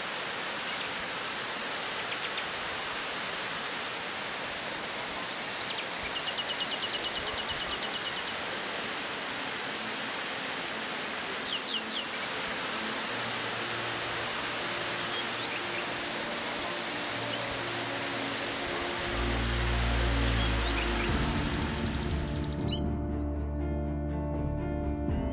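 Steady rush of a waterfall, with a bird's rapid trill and a few chirps over it. Music comes in about halfway, grows louder, and the water sound cuts off shortly before the end, leaving only the music.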